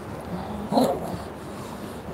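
A short, dog-like whimpering cry from a person about a second in, with a fainter low vocal sound just before it.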